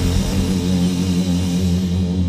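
Heavy stoner rock band holding a low final chord: distorted electric guitar and bass ringing on a sustained note while the cymbal wash thins out.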